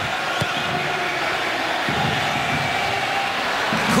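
Steady noise of a large stadium crowd at a soccer match, rising a little near the end.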